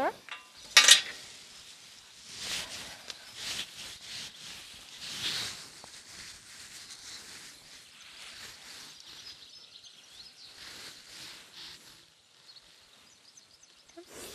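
A sharp click about a second in, then scattered rustling and light clinks as a cinch strap is handled and laid over a horse's back.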